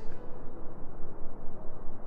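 Low, fluctuating rumble of background noise with no distinct events, heard in a pause between spoken sentences.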